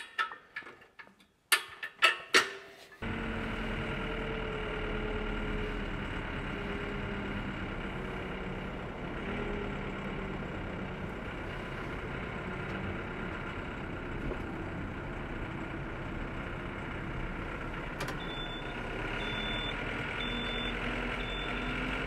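A few metallic clinks from the steel pins of a tractor's three-point hitch. Then, about three seconds in, a tractor engine takes over, running steadily with a low hum.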